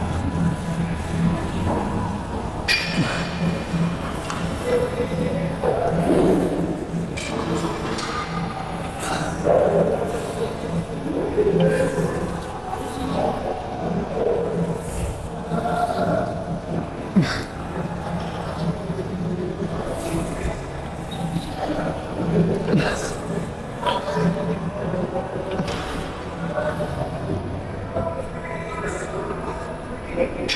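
Gym ambience: indistinct voices over a steady low hum, with scattered short metallic clanks and clicks from the equipment.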